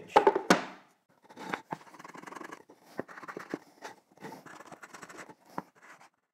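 Block plane shaving the corners of a pine frame in a series of short scraping strokes with small clicks, trimming off imperfections at the corners.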